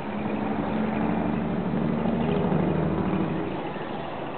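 Low engine hum of a passing vehicle over outdoor city noise. It swells at the start and fades away about three and a half seconds in.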